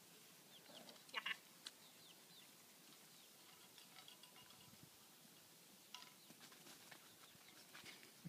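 Mostly quiet, with a few faint short high squeaks from puppies at play; the loudest, a pair of squeals, comes about a second in.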